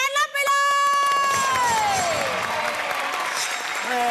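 Studio audience applauding and cheering the win, opening with one long held shout that slides down in pitch, then steady clapping.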